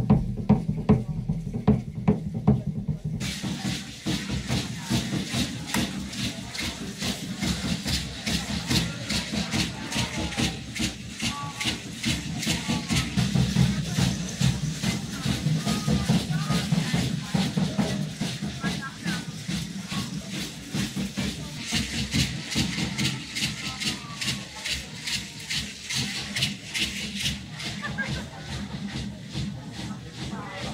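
Music with a fast, steady beat, with voices over it.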